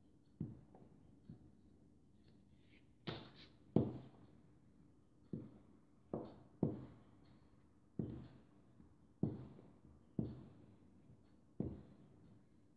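A plastic rolling pin rolling fondant thin on a silicone mat on a table, with repeated dull knocks about once a second at an uneven pace as the pin and hands work the fondant.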